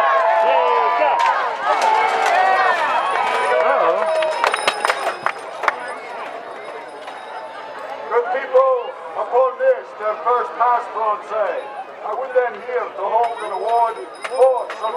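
Joust spectators cheering and shouting, many voices overlapping, with a few sharp knocks about four to five seconds in. The level then drops, and in the second half come repeated, evenly spaced chanted calls.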